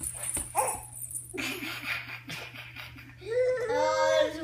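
Young children vocalizing and laughing: short breathy laughs early on, then a drawn-out high-pitched voiced 'aah' starting about three seconds in.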